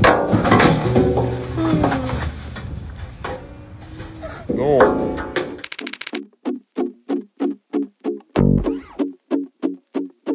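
Cattle mooing at a feed trough, with voices, until about five and a half seconds in. A short jingle follows: plucked guitar-like notes at about three a second, with one low thump near the end.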